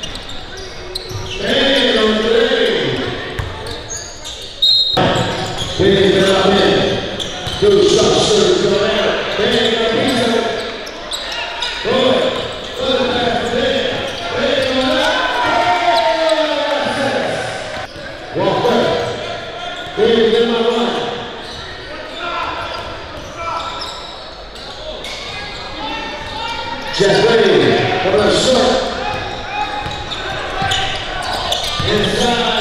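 Live basketball game sound in a gym: a basketball dribbling and bouncing on the hardwood floor among indistinct shouts and chatter from players and the crowd, echoing in the hall.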